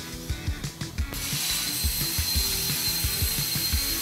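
A Hypertherm HPRXD plasma cutting torch strikes its arc about a second in and cuts mild steel on a bevel head. It makes a steady loud hiss with a thin high whine over it.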